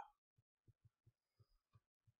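Near silence with about six faint, soft low thuds at uneven intervals: fingers tapping and pressing on a laptop trackpad.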